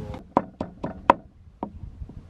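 Wooden pestle pounding in a small wooden mortar, crushing chili and garlic: about five sharp knocks at uneven intervals, the loudest about a second in.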